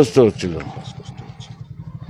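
A small engine running steadily at idle with a fast, even pulse.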